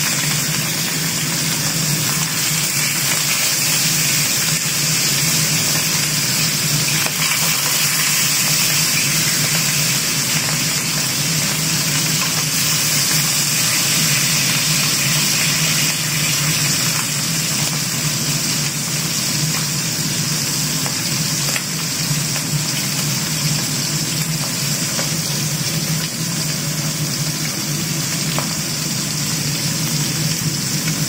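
Pieces of scabbard fish sizzling steadily in shallow oil in a wok, over a steady low hum.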